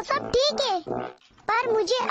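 Animated cartoon character voices speaking in short, pitch-swooping phrases, with a brief pause about a second in.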